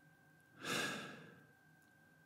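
A man's single breathy sigh, an exhale that starts about half a second in, rises quickly and fades away over most of a second.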